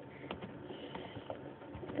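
A few light, separate clicks of computer keyboard keys being typed, over low room noise.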